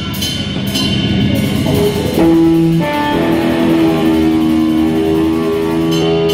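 A live rock band playing, with a drum kit and electric guitars; from about two seconds in, held guitar notes ring out over the beat.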